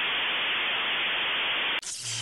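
Steady, even electronic static hiss, a signal-lost effect under an offline screen. It cuts off abruptly near the end and gives way to a brief burst with a low hum.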